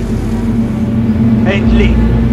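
The twin radial piston engines of a Douglas C-47 Dakota running with a steady low drone. A man's voice speaks a word in French over it near the end.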